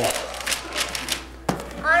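Wrapping paper tearing and crinkling as a present is unwrapped by hand, in a quick run of crackly rips, followed by a single sharp knock about a second and a half in.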